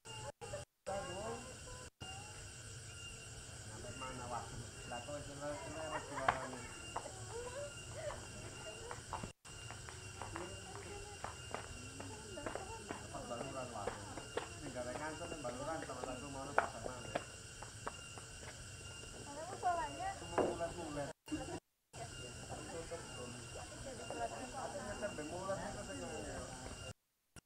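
Faint, indistinct voices of people talking in the background, with a thin steady high-pitched tone underneath.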